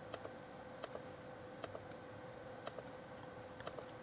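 Faint computer mouse clicks, about five in all, each a quick double tick, spaced roughly a second apart over a faint steady hum.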